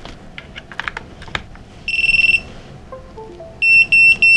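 A few small clicks as a USB cable is plugged into a quadcopter's flight controller, then the board's buzzer beeps: one longer high beep, and a quick run of short high beeps near the end. A short falling run of lower tones comes between them.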